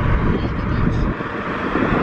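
Steady road and wind noise from a car driving at speed, with a low rumble that eases about a second in.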